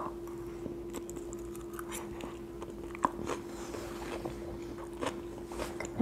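A person chewing a mouthful of lettuce-based taco salad: quiet, irregular crunches, with a steady low hum underneath.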